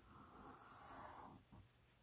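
Felt-tip marker drawn across paper in one long stroke: a faint, hissy rasp for about a second and a half that then stops.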